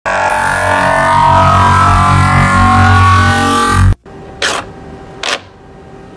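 3D printer running with a loud steady whir of several held tones, which cuts off abruptly about four seconds in. Two short soft rustles follow.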